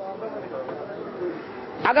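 A bird cooing in the background, a low call well below the level of the voice, heard through a pause in a man's talk.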